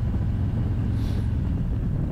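A 2021 Harley-Davidson Road Glide's Milwaukee-Eight 107 V-twin engine running steadily while the bike is ridden, heard as an even low drone.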